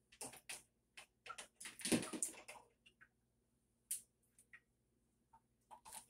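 Faint, irregular clicks and knocks of kitchenware being handled as strainers are picked through, with a louder clatter about two seconds in.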